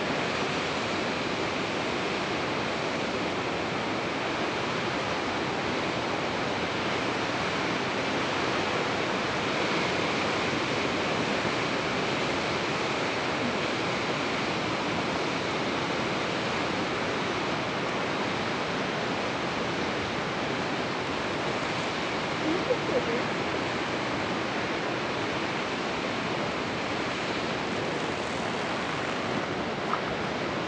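Ocean surf, a steady, even rush of waves breaking on the shore.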